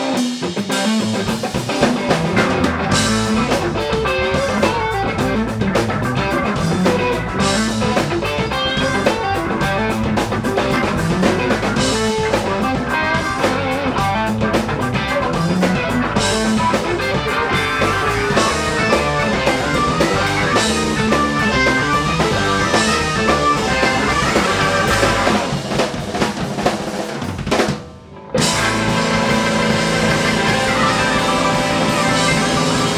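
Live blues-rock band playing an instrumental: Gristle-Master electric guitar with Fishman Fluence pickups, Hammond organ, electric bass and drum kit. Near the end the band stops for about a second, then comes back in together.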